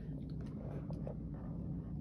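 Faint clicks and rustles of a marker being handled over a paper notebook, against a low steady room hum.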